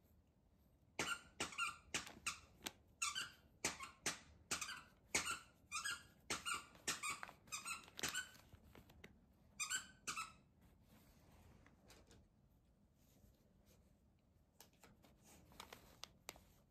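Shiny wrapping paper on a gift crinkling in many short, irregular bursts as a kitten paws and noses at it, then only faint rustles after about ten seconds.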